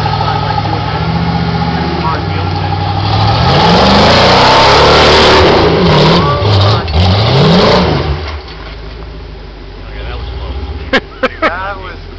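Rock buggy's V8 engine revving hard under load up a steep rock ledge, its pitch rising and falling again and again with the throttle for several seconds, then falling away to a much lower steady running about eight seconds in. Two sharp clicks near the end.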